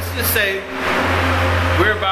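A steady low machine hum, with a man's voice in short bits over it.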